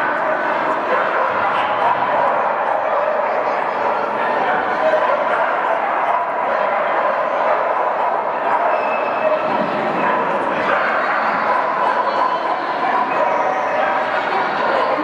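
Many dogs barking and yipping over one another without a break, mixed with the chatter of a crowd in a large indoor hall.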